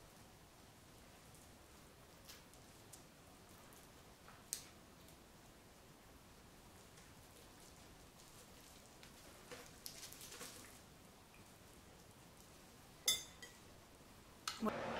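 Faint, sparse rustling and crinkling of brick pastry and baking paper as hands roll up a filled nem, with a sharper tap near the end.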